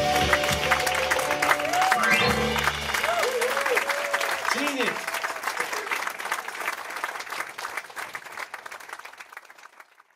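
Live band of piano, drums, bass and guitar ending a song on a held chord that stops about three seconds in, over audience applause. The clapping goes on after the music stops and fades out near the end.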